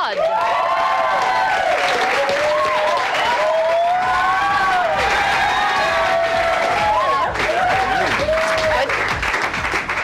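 Studio audience applauding steadily, with high voices cheering and whooping over the clapping.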